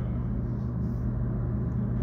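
Steady low hum with a faint hiss above it, unbroken while nobody talks.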